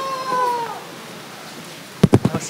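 Two voices in a long, high, wordless drawn-out call that overlap, then glide down and stop a little under a second in. After that there is only low room noise.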